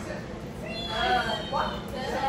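A dog whining: a high cry that rises and falls about a second in, with people talking in the background.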